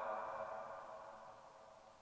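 The ringing tail of a spoken "uh" carried by a hall's public-address system, a faint set of steady tones that fades away over about a second and a half.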